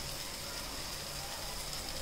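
Mutton masala frying in oil in a metal pot, a steady sizzling hiss as the oil separates from the masala.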